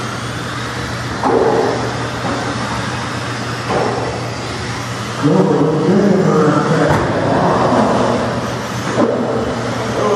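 Electric 1/16-scale Traxxas RC cars racing on a carpet track, their motors and tyres making a steady noisy whir. It grows louder for a few seconds from about five seconds in as a car passes close by.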